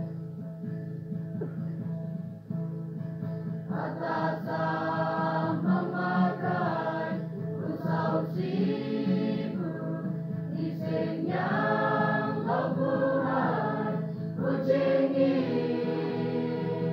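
Church choir singing a hymn-style song in a local dialect, many voices together in sustained notes. The singing is softer for the first few seconds and grows fuller from about four seconds in.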